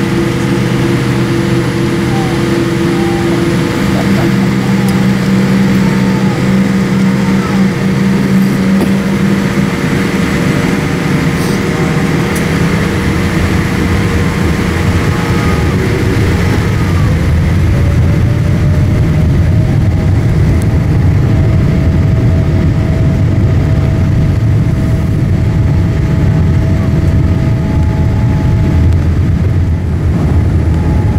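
Cabin noise inside a Boeing 787 on the ground: a steady engine and airflow hum. About halfway through, one tone rises in pitch and a deeper rumble builds as the engines pick up.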